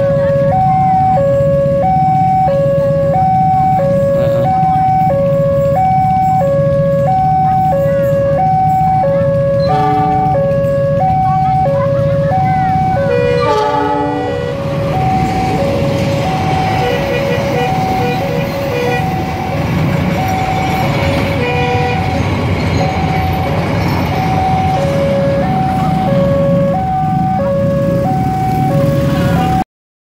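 Railway level-crossing alarm sounding two alternating electronic tones, high then low, about one cycle a second, over the steady rumble of a freight train. From about halfway the hopper wagons roll past, adding wheel and rail noise, and the sound cuts off just before the end.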